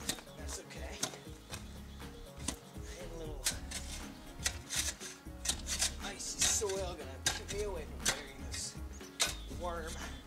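A metal-bladed shovel digging down through packed snow into rocky soil: irregular sharp chops and scrapes of the blade, coming in quick clusters.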